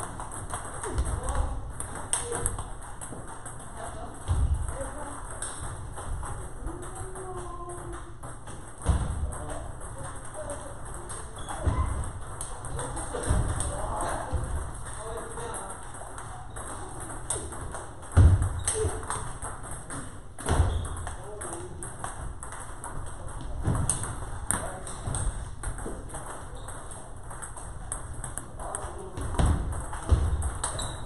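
Table tennis rallies: celluloid-type ping-pong balls clicking off rubber rackets and table tops at an irregular pace, with several tables playing at once and people talking in the background.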